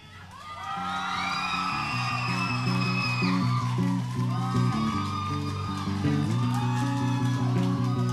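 Electric guitar picking a quiet, sparse single-note riff in a low register. High gliding whoops from the audience sound over it.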